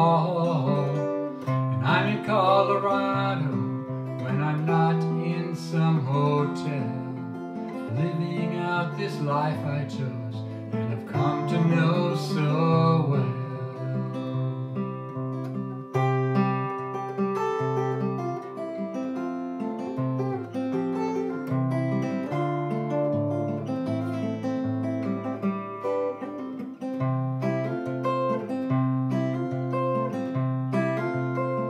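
Steel-string acoustic guitar played solo, an instrumental passage between sung verses.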